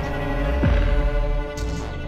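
String quartet holding sustained chords over a deep electronic bass hit that slides down in pitch, landing once about two-thirds of a second in, with a few high ticks near the end.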